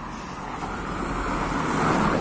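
A car drives up the brick-paved street and passes close by, its tyre and engine noise swelling steadily and peaking near the end as it goes past.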